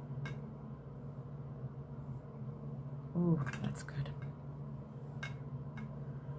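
A short wordless vocal sound, like a brief murmur, about three seconds in, over a steady low hum. A few faint clicks near the start and near the end.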